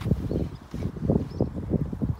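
Wind buffeting a phone's microphone outdoors: an uneven, gusting low rumble.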